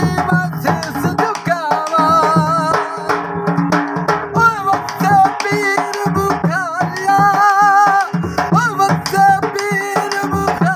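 A man singing a Punjabi kafi with wavering, ornamented held notes, accompanied by a dhol drum beating a steady rhythm.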